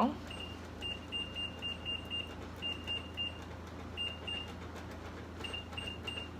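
Electric stove's touch controls beeping: short, high beeps in quick runs of several, with pauses between, as the heat setting is stepped all the way down. A steady low hum runs underneath.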